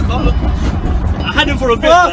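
Steady low rumble of a car's engine and road noise heard inside the cabin, with a person's voice rising over it in the last half second.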